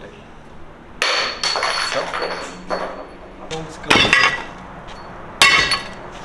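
Small metal diamond core bits for porcelain tile being tossed into a cardboard box, landing with three sharp metallic clatters about one, four and five and a half seconds in.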